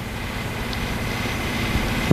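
Steady room tone: a constant low hum with an even hiss over it.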